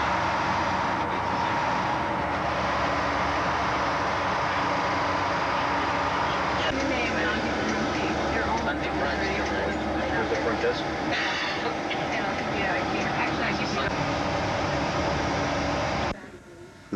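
Steady engine and road noise heard from inside a moving bus, with the engine hum changing its note about seven seconds in.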